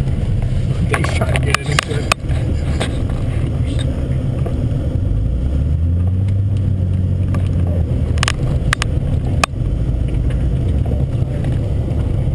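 Buick LeSabre's engine revving hard inside the cabin while pushing through deep snow, its pitch rising about five seconds in and held high for a few seconds, with several sharp knocks along the way.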